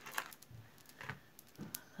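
A few faint, scattered clicks and light clinks of costume jewelry being handled, small metal pieces and beads tapping against each other.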